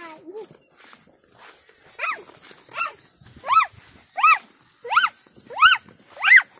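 An animal calling over and over: short, high calls that rise and fall in pitch, about one every 0.7 seconds, starting about two seconds in and growing louder.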